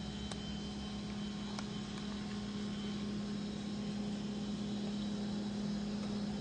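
Steady low hum over a constant background hiss, with a few faint clicks in the first two seconds.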